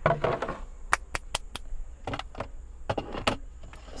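Plastic food containers and bags handled and set down on a counter: a string of light clicks and knocks over a low steady hum.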